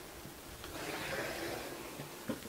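Rotary cutter blade rolling along the edge of an acrylic quilting ruler, slicing through fabric on a cutting mat: a faint, scratchy hiss lasting about a second, starting about half a second in.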